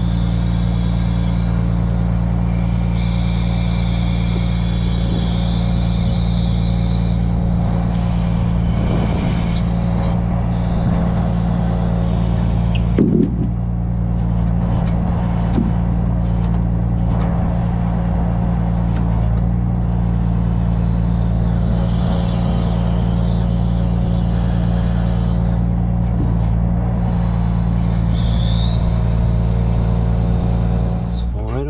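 Truck engine running steadily at raised speed to drive a truck-mounted knuckle-boom crane's hydraulics while poles are lifted, with a higher whine coming and going. A single knock about midway.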